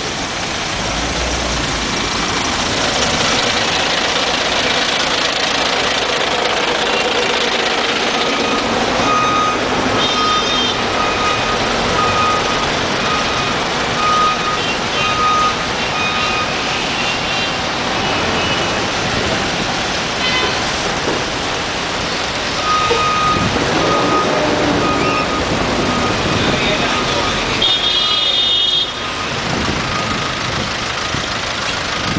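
Dense, slow road traffic with bus, truck and car engines and tyres running together. Through the middle a vehicle's reversing alarm beeps steadily, a bit more than once a second, and a short high horn toot sounds near the end.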